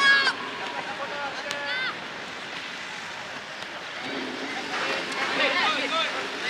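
Young players shouting short, high-pitched calls across an outdoor football pitch during play: a sharp shout right at the start, another about a second and a half in, and more calling in the last two seconds, over a steady outdoor hiss.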